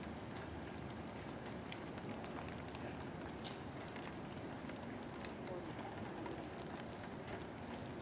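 Steady rainfall, a constant hiss with scattered drops pattering close to the microphone.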